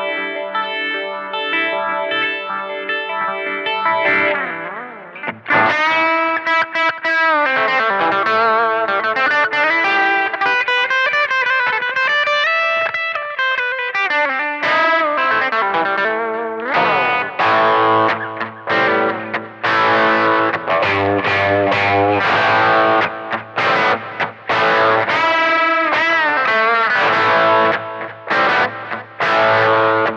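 Electric guitar played through a Boss GT-1000 Core's effects, run in the effects loop of a Blackstar valve amplifier so that the amp's own preamp shapes the tone. It begins with held, effected chords, moves to picked single-note lines, and from about halfway through turns to heavier distorted chords and riffs with more low end.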